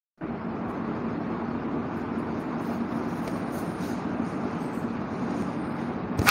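Steady rushing background noise with a faint low hum, starting just after the recording begins.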